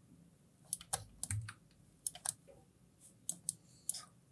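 Scattered sharp clicks, several in quick pairs, from a computer mouse's buttons and keyboard keys.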